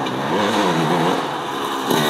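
Dirt bike engine revving up and down in pitch several times as the throttle is worked on a climb, with a sharp rev near the end.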